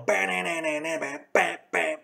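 A man imitating a guitar riff with his voice, without words: one held, wavering note for just over a second, then two short, sharp syllables.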